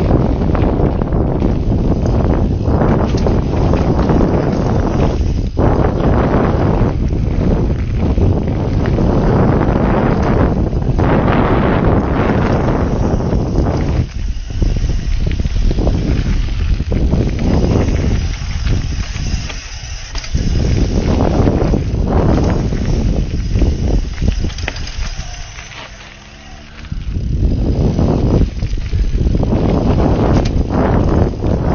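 Wind buffeting the camera microphone over the noise of a mountain bike's tyres rolling over a rough dirt and root trail on a fast descent. It quietens for a second or two near the end.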